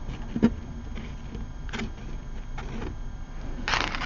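A few faint, scattered clicks and taps of small objects being handled on a tabletop, over a low steady hum, with a brief soft rush near the end.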